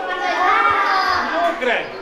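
A group of children talking and calling out over one another, their high voices overlapping without a break.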